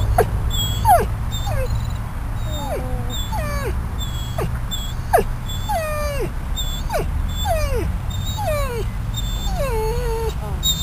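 Yellow Labrador retriever, recovering from an operation on his tummy, whining in a steady run of short calls, one or two a second, each falling in pitch, over a steady low rumble. The owner says this whining is what he does somewhere new or where he doesn't want to be, though he is also uncomfortable and probably hungry, so it is hard to tell whether he is in pain.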